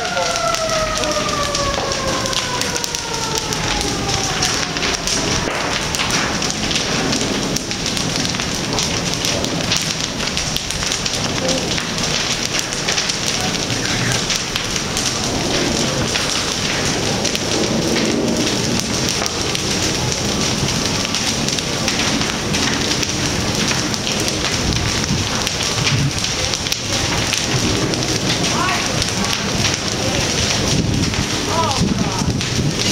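Wooden houses burning fiercely: a loud, steady crackling and rushing of the fire, thick with small pops and snaps. During the first few seconds a whining tone slides slowly down in pitch and fades.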